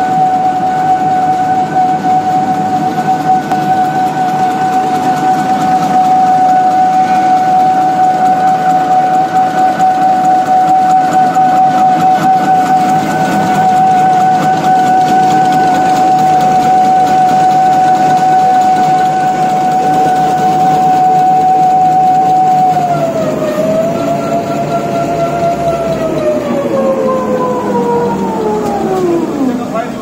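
Tissue-paper and napkin folding machines running: a steady high motor whine over dense mechanical clatter. Over the last seven seconds the whine dips and then falls steadily in pitch, as a machine slows down.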